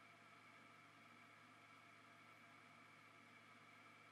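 Near silence: faint steady room tone with a low hum.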